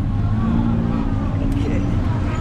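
Tuk-tuk engine running with a steady low rumble, heard from the open passenger cab amid street traffic.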